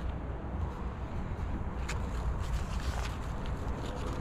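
Steady low outdoor rumble with faint rustling as a fig tree's root ball and potting soil are handled in a plastic pot, and one light click about two seconds in.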